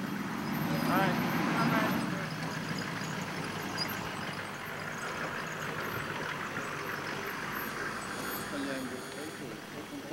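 Indistinct voices, loudest about a second or two in and fainter again near the end, over a steady background noise.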